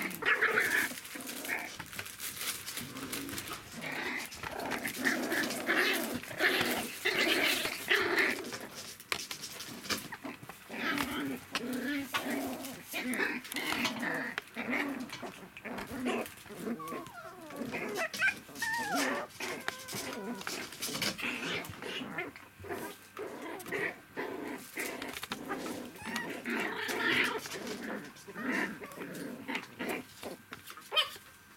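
Three-week-old poodle puppies at play, growling, whimpering and squealing over one another almost without pause, with many small clicks and knocks mixed in.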